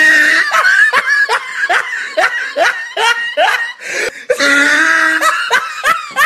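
A person laughing hard in a long run of short 'ha' bursts, about three a second, with a longer held sound a little past the middle.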